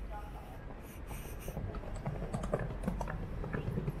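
Outdoor city background noise with indistinct voices of people nearby, becoming more noticeable about halfway through.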